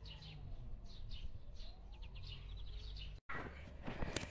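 Faint birds chirping in short repeated calls, over a low steady rumble. The sound drops out briefly near the end.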